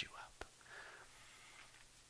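A man's voice finishing a word, then near silence with one faint click and a faint breathy murmur.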